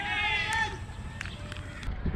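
A long, high-pitched shout from a voice on the field, held and wavering, breaking off less than a second in; after it, open-air background noise with a few faint clicks.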